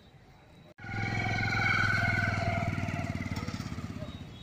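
Motorcycle engine running close by as the bike rolls slowly past, starting abruptly about a second in and then fading as it moves off.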